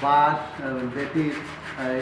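A man talking, with faint scraping of a hand tool working a carved mask underneath.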